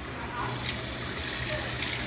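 Water running steadily from a hose into a mop sink, the tap just turned on.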